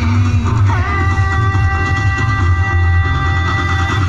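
Loud music accompanying a stage dance, with a heavy bass; about a second in, a moving melody gives way to a long held chord.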